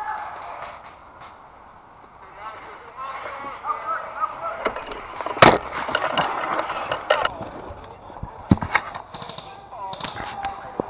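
Indistinct voices, with a single loud sharp crack about five and a half seconds in and a few lighter knocks and clicks near the end.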